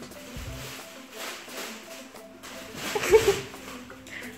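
Background music with a thin plastic shopping bag rustling and crinkling as it is shaken in a hand, loudest just after three seconds in.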